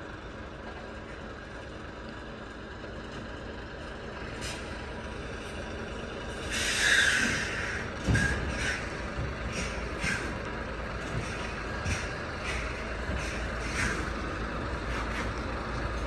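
Articulated truck's diesel engine running low and steady as the tractor-trailer reverses slowly, with a loud hiss of air brakes about a second long midway through, followed by a string of short sharp clicks and hisses.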